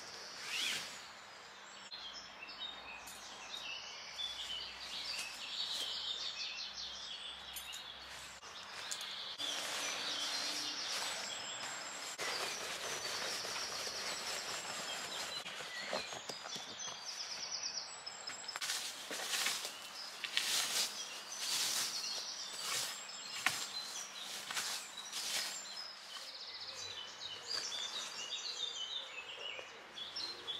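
Small woodland birds chirping and singing throughout, with a stretch of rustling and crackling from a tarp and camping gear being handled and packed away in the middle.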